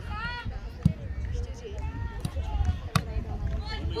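A football kicked twice, two sharp thuds about two seconds apart, the second the louder. Young players' voices call out around them.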